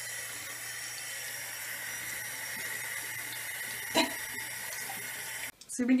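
Water running steadily from a tap, cut off suddenly near the end, with one short sound about four seconds in.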